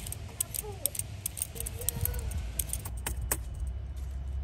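A metal Y-peeler scraping down a carrot in a series of short strokes, each a quick scratchy rasp, with two sharper clicks a little after three seconds in.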